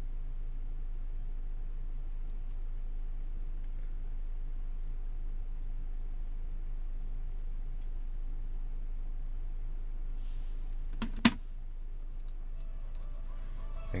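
Steady low hum inside the car, with a single sharp click about eleven seconds in. Near the end, music starts playing faintly through the Tesla Model S speakers, streamed from an iPhone over Bluetooth.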